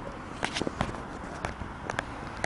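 Footsteps on a paved street, heard as a few light, irregular clicks over low background noise.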